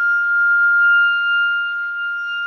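One long held note on a wind instrument, steady in pitch and growing slightly softer.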